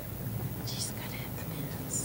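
Quiet whispered and murmured talk among people in a meeting room, with two short soft hissing sounds, one partway through and one at the end.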